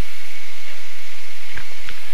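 Steady hiss from an open microphone, with two faint short clicks about a second and a half in.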